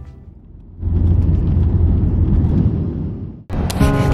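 Jet airliner heard from inside the cabin on the runway: a loud, steady engine and cabin rumble. It starts about a second in as fading music ends, and cuts off suddenly near the end, where music starts again.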